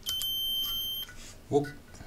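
A DIY metal detector kit's buzzer sounds one steady, high-pitched beep lasting about a second as the main power switch is pressed, a sign that the freshly built circuit is working.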